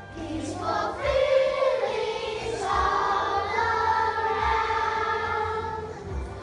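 Children's choir singing together, holding a long note through the second half.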